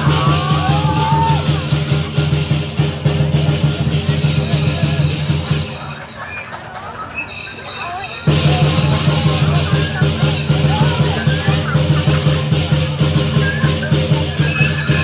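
Lion dance music: drum and cymbals beating fast and steadily, with voices underneath. The music drops away about six seconds in and comes back abruptly about two seconds later.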